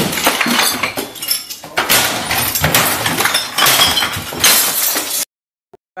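Glass bottles smashing and clinking in a dense, continuous run of crashes that cuts off suddenly about five seconds in.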